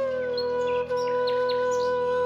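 A flute holds one long note over a low sustained drone. The note slides down slightly at the start, then stays steady. Birds chirp in short high calls above it throughout.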